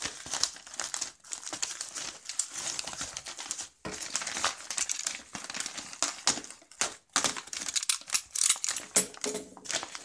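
Bubble-lined paper padded envelope crinkling and rustling as it is handled, cut along its sealed end with a utility knife and pulled apart by hand. The crackling is irregular, with brief pauses about four and seven seconds in.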